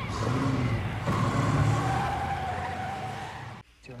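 Car engine revving with tyres squealing as the car pulls off. It cuts off abruptly near the end.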